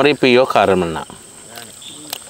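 Crickets chirping steadily at a high pitch at night. A voice is loudest in the first second and trails off with a falling pitch, leaving the crickets alone.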